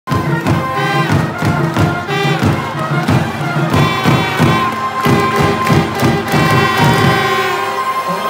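Baseball stadium cheering: music with a drum beating a fast, steady rhythm, about four strokes a second, and the crowd cheering along. A single high note is held through the last few seconds.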